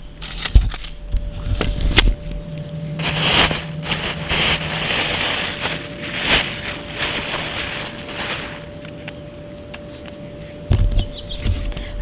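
Thin plastic shopping bag rustling and crinkling as it is handled, loudest for about five seconds in the middle, with scattered clicks and knocks of handling before and after.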